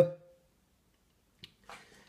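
The tail of a man's drawn-out "uh", then near silence broken by one short faint click about one and a half seconds in.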